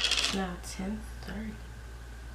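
Soft mumbled words with a brief clinking rattle at the start, over a steady low hum.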